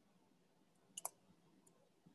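Near silence, broken by a quick pair of small, sharp clicks about a second in and one fainter click a little later.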